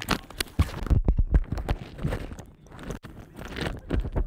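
Football shoulder pads and jersey rubbing and knocking against a body-worn microphone as they are pulled off over the head: irregular scraping and rustling with thuds and low rumble from the jostled mic.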